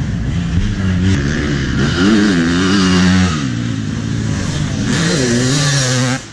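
Two-stroke dirt bike engines running, with a rev that climbs in pitch about two seconds in and drops off sharply a second later, then a second rev near the end.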